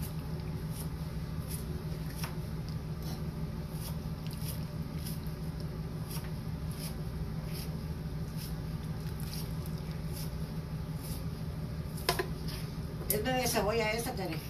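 Metal kitchen tongs handling soaked, softened dried chiles in their soaking water, making faint light clicks and wet squishes over a steady low hum. A voice speaks briefly near the end.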